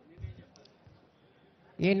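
Faint background with a few soft clicks. Near the end a man's announcing voice starts, introducing the chief guest.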